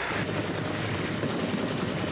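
Steady running noise of a Navy SH-3 Sea King helicopter's rotor and turbine engines as it hovers low over the sea.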